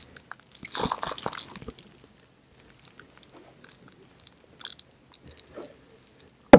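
Close-miked chewing of an edible chocolate imitation soap bar: one louder crunching chew about a second in, then quieter scattered mouth clicks.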